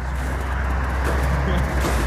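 Steady outdoor background rumble with a broad hiss above it, vehicle-like in character, with no sudden events.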